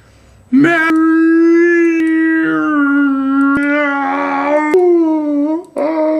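A young man howling like a dog: one long held, slightly wavering note lasting about five seconds, then a second howl starting just before the end.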